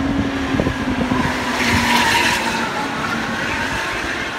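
Intercity coach bus passing at speed on a highway: a steady engine drone and tyre noise that swell to a peak about two seconds in, then fade.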